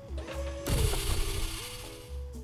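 Background music holding steady notes, with a mechanical sci-fi metal door sound effect coming in under a second in and lasting about a second.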